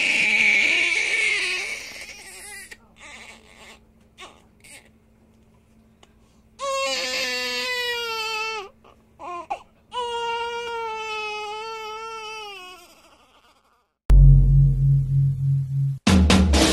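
An infant crying: a loud cry at the start, then two long wails that sink in pitch. About two seconds before the end, a drum-led music track with a heavy bass drum beat starts.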